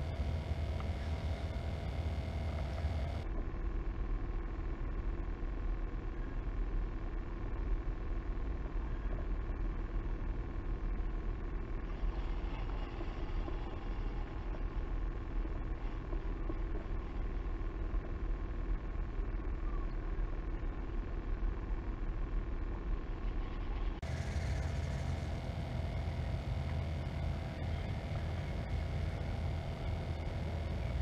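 Steady wind rumble on a kayak-mounted camera's microphone, heavy in the lows, with no distinct events; the character of the noise shifts abruptly about three seconds in and again a few seconds before the end.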